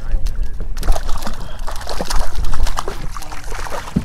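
Water sloshing and lapping against a kayak hull, with irregular small splashes and slaps, over a steady low rumble of wind on the microphone.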